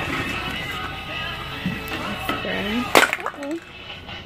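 Background music with held tones, and about three seconds in a single sharp clatter of a shopping item dropping out of a cart.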